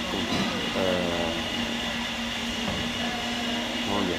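Steady mechanical hum with a constant low tone from background machinery, running evenly throughout. A man's short hesitant 'euh' comes about a second in.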